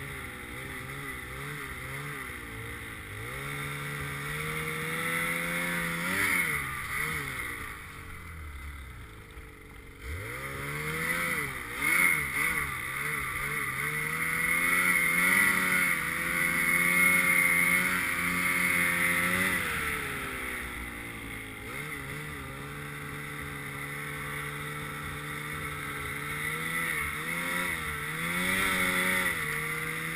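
2018 Ski-Doo Summit X snowmobile's two-stroke engine running under way, its pitch rising and falling with the throttle. It eases off about eight seconds in, then revs up sharply around ten seconds and holds a higher, steadier pitch.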